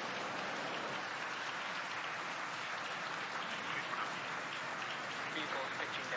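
Falcon 9 rocket's nine Merlin engines at liftoff, heard on the launch feed as a steady crackling noise.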